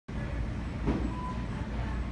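Store background noise: a steady low rumble, with a brief rustle about a second in.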